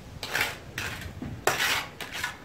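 Steel mason's trowel scraping fine cement mortar, metal against metal, in three short scraping strokes about half a second apart.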